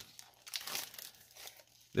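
Foil wrapper of a trading-card pack crinkling faintly as it is handled in the hands.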